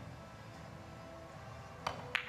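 Carom billiard balls striking each other in a three-cushion shot, one sharp click near the end, over a low steady hall background.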